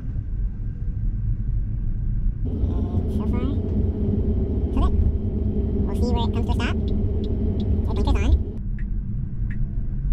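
Low, steady road and tyre rumble inside an electric Tesla's cabin as it drives, growing louder and fuller for about six seconds in the middle.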